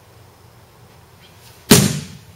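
A single loud, sharp slap near the end: an aikido partner's body and hand hitting the mat in a breakfall, dying away quickly.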